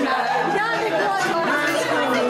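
Several people chattering and exclaiming at once, overlapping voices without clear words.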